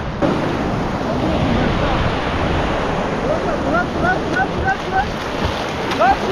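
Sea surf in shallow water, a steady rush of small waves washing and breaking. About three seconds in, a run of about six short, high calls comes through it.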